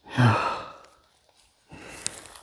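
A man sighing once, a short voiced breath out near the start. Faint rustling follows near the end.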